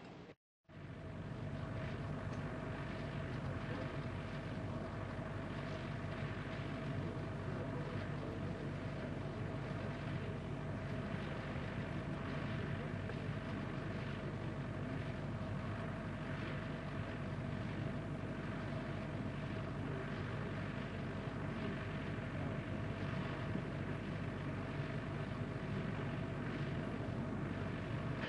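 Steady launch-pad ambience beside a fueled Soyuz rocket: a continuous low rumbling hiss with a steady mid-pitched hum from pad equipment. The sound drops out briefly right at the start, then runs evenly.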